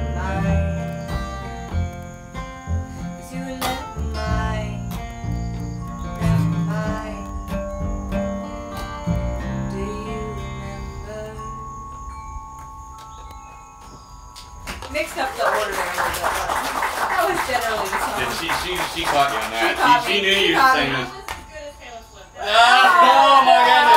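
Acoustic guitar and upright bass accompanying a woman's singing, ending on a final chord that rings and fades out. A few seconds later an audience claps for about six seconds.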